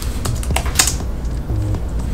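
Quick typing on a Logitech MX Keys S, a low-profile scissor-switch wireless keyboard: a fast, irregular run of soft keystroke clicks.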